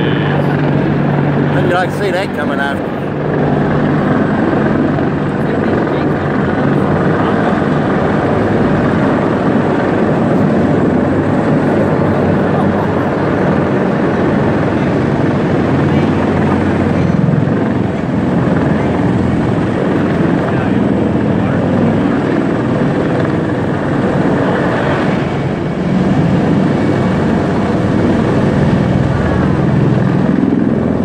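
A Marine Corps CH-53E Super Stallion heavy-lift helicopter flying low overhead, its rotor and turbine engines running loud and steady, with a rapid rotor beat.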